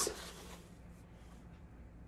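Quiet room tone with a faint steady low hum, after the tail end of a voice at the very start.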